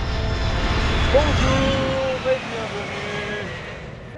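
Jet airliner flying past: a loud rushing rumble that swells in the first second and fades away toward the end, with a few faint held voice-like tones over it in the middle.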